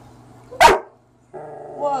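A dog barking once, a single short sharp bark about half a second in.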